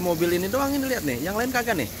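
A person's voice talking over a steady hiss of rain falling on car roofs.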